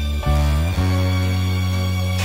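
Instrumental intro of a hip-hop track: held low notes that step to a new pitch twice in the first second, then sustain.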